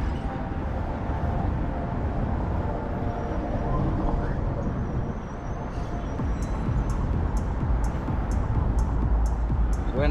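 Street traffic at an intersection, with a low wind rumble on the microphone, under background music. From about six seconds in there is a light ticking, about twice a second.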